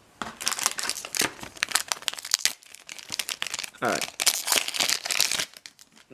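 Crinkling and tearing of a booster pack's foil wrapper as it is opened, in a dense run of irregular crackles, with trading cards being handled.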